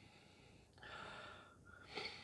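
A man sniffing the aroma of a glass of stout: one long, faint breath in through the nose about a second in, and a short sniff near the end.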